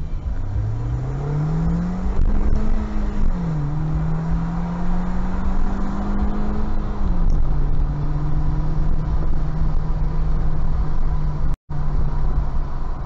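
Car engine heard from inside the cabin, accelerating away: its note climbs, drops about three seconds in as the car shifts up, climbs slowly again and drops at a second upshift about seven seconds in, then holds steady while cruising. A steady low road rumble runs underneath.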